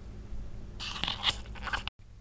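Hands handling yarn and a yarn ball make a few short scraping, rustling sounds over a low steady hum, and the sound cuts out abruptly near the end.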